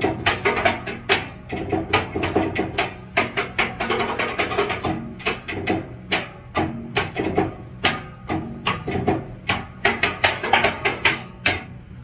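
Rhythmic percussion: quick, sharp hand strikes on the brass body of a tuba, played like a drum, several hits a second.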